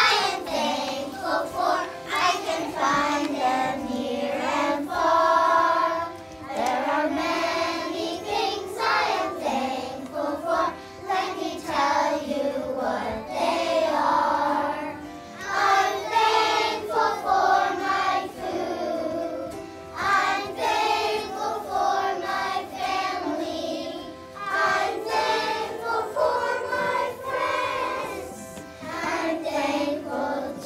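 A group of young children singing a song together, phrase after phrase, with brief breaks between lines.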